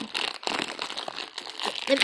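Plastic fruit snacks pouch crinkling with rapid, irregular crackles as it is handled.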